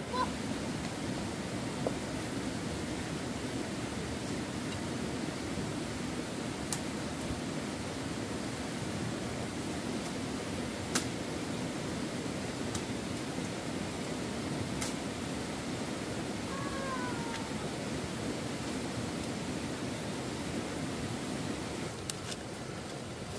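Steady low rush of a shallow stream running over rocks. A few sharp clicks come from the plants being handled, and a short falling call sounds once, about two thirds of the way in.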